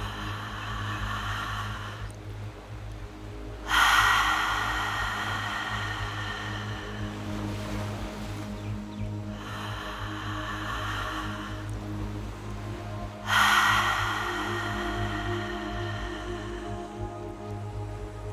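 Slow, deep breaths taken audibly through the open mouth, in long swells: two loud breaths begin suddenly about four and thirteen seconds in, with softer breaths between them. Calm music with a steady low drone plays underneath.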